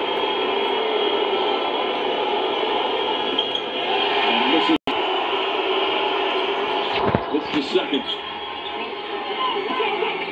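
Basketball arena crowd noise, a steady mass of crowd voices during free throws, heard through a TV speaker. The sound cuts out for an instant about halfway through.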